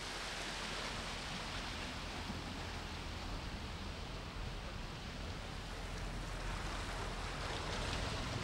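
An open canal tour boat motoring past, a steady low engine rumble under the rush of churning water from its wake.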